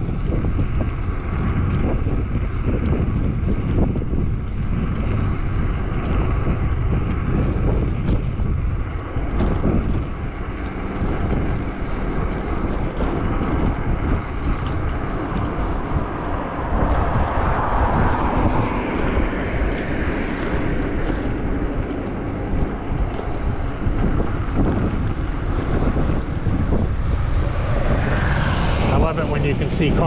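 Steady wind rushing over the microphone of a camera on a moving bike, with road noise underneath. Near the end a motorbike engine grows louder as it comes up alongside.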